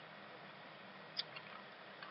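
Computer mouse click about a second in, with a fainter tick just after, over faint steady room hiss.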